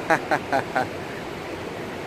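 Ocean surf: a steady wash of waves breaking on the shore, heard under a brief voice in the first second.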